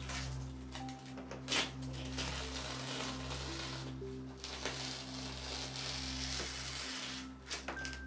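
Masking tape being peeled off a painted canvas: a long rasping tear through the middle, with a couple of sharp snaps as strips come free.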